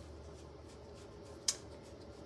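Quiet room tone with a faint low hum, broken by a single short, sharp click about one and a half seconds in.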